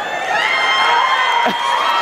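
A man screams loudly, one long held yell right beside a woman's ear, while a theatre audience cheers and whoops around it.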